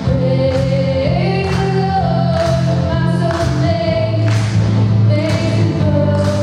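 Live worship band playing: a woman sings long held notes over keyboard, guitars and drums, with drum and cymbal hits on a steady beat about once a second.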